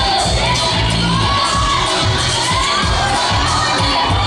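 Spectators shouting and cheering over samba music with a steady, driving beat; the shouts rise and fall in long calls.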